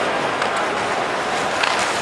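Ice hockey arena ambience: a steady wash of crowd noise and skates on the ice, with a few sharp clicks in the second half.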